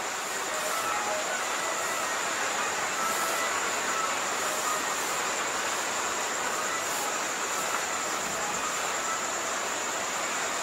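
Steady background hiss of room noise, with a faint, high, steady whine over it and no speech.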